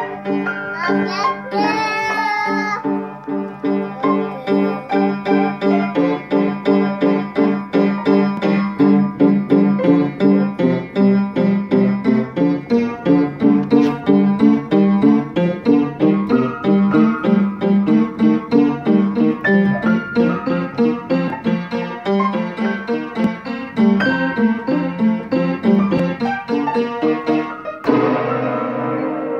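Upright piano being banged on by two young children, clusters of keys struck over and over in quick uneven hits, several a second, with no tune.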